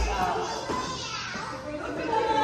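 Children's voices calling out and chattering while playing a game, with a bass-heavy music track that cuts out just after the start.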